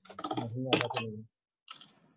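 A brief, indistinct voice over a video call mixed with sharp clicks like computer-keyboard typing, then a short hiss near the end; the sound cuts off abruptly between bursts.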